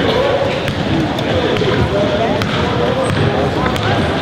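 Basketball being dribbled on a hardwood gym floor, a run of sharp bounces at uneven spacing, over a background of indistinct voices.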